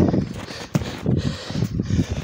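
Footsteps crunching in snow, an uneven run of short strokes, with a sharp click about three-quarters of a second in.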